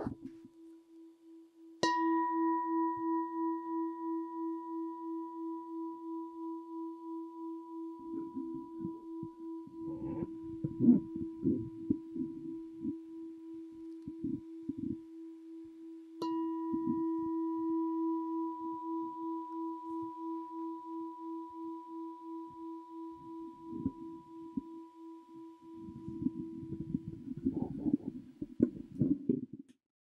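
Singing bowl struck twice, about two seconds in and again about sixteen seconds in. Each strike rings out in a long, slowly fading tone with a steady pulsing waver, marking the close of the meditation.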